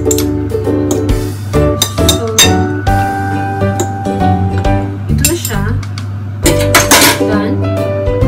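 Background song with held notes and a voice, over a metal fork and spoon clinking against a ceramic bowl as meat is stirred in marinade, with a few sharp clinks.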